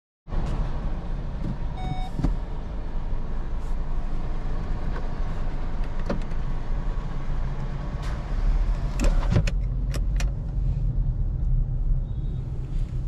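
A Kia Cerato's engine and road rumble heard steadily from inside the cabin as the car pulls away. A short electronic beep sounds about two seconds in, and sharp clicks from the controls come several times, mostly near the end.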